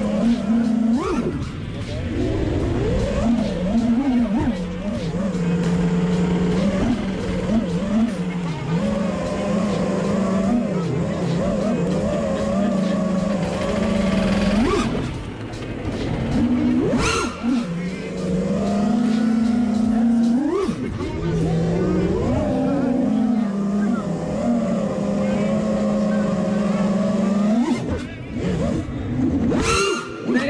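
FPV racing quadcopter's brushless motors and propellers whining, holding a steady pitch for seconds at a time and then sweeping up sharply as the throttle is punched, several times through the flight.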